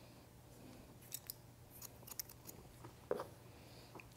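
Hairdressing scissors snipping through a section of wet hair held on a comb: a run of faint, short snips starting about a second in, with one more prominent click about three seconds in.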